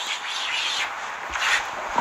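Chalk scraping across a blackboard as lines are drawn, a steady dry scratching that runs almost without a break.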